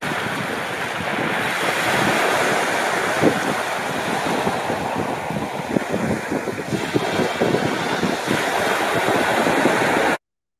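Sea waves breaking and washing over a shingle beach: a steady rush of surf with many small knocks of pebbles, and wind on the microphone.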